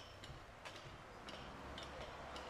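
Faint, regular light ticking clicks, about three a second, over a low rumble.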